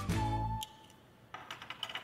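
Background music that cuts off about half a second in, followed by a few light clicks and taps of a small plastic toy case being opened and handled.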